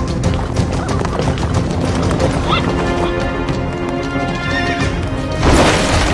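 Fight-scene soundtrack: a dramatic music score with rapid percussive clicks, swelling into a held chord, then a loud crash of a wooden table breaking near the end.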